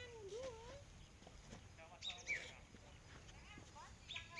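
Faint outdoor birdsong: a cluster of short, high, falling chirps about two seconds in, after a brief wavering hum in the first second.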